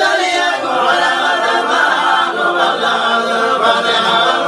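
Men's voices chanting together a cappella, a continuous melodic religious chant with no instruments: Somali subac-style chanting of a Quranic verse.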